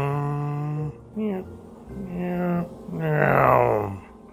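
A man's voice intoning long, held, sung-sounding notes in imitation of someone's noise. A held note carries on to about a second in, then comes a short one, another held note, and a last one that slides down in pitch near the end.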